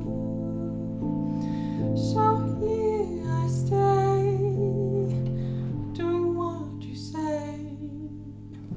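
Woman singing a slow ballad phrase while accompanying herself with sustained chords on a digital keyboard. She deliberately sings with her mouth barely open, so the tone lacks clarity and the words can't be made out. Her voice comes in about two seconds in, over the chords.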